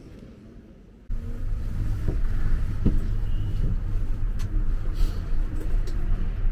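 Quiet interior room tone for about a second, then an abrupt cut to a loud, steady low rumble of city road traffic with cars passing.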